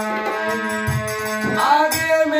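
Harmonium holding steady chords, with a few low dholak strokes from about a second in, and a man's voice rising into a devotional song near the end.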